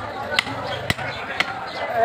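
Butcher's cleaver chopping beef on a wooden stump block: three sharp strikes about half a second apart.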